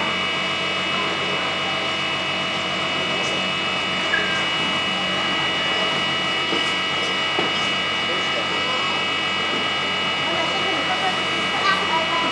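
Large electric ducted fan running steadily, a rush of air with a constant high whine made of several fixed tones, blowing on a model plane. Faint voices murmur in the background.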